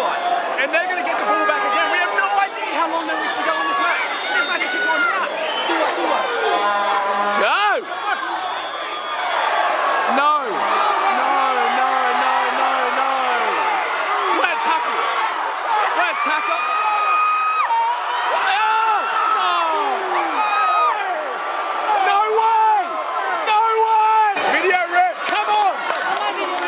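Stadium crowd shouting and cheering during a rugby match, many voices overlapping, with individual shouts close to the microphone.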